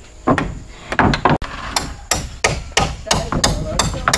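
Hammer blows on timber, a run of sharp strikes that begins shortly in and quickens to about three a second.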